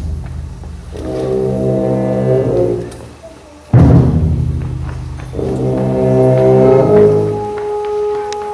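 A symphonic wind band playing. Brass chords swell, broken about halfway through by a sudden loud full-band accent with a drum stroke. Another brass chord follows and thins near the end to a single held note.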